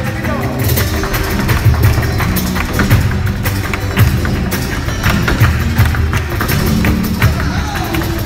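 Live flamenco: a flamenco guitar and an electric bass play over frequent sharp percussive strikes from the dancer's zapateado footwork stamping on the stage, with hand-clapping (palmas).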